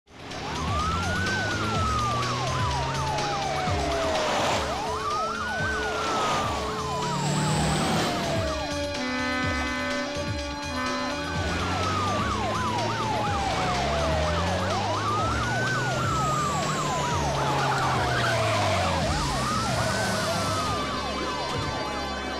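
Police siren wailing, each cycle rising quickly and then falling slowly, repeating about every four seconds.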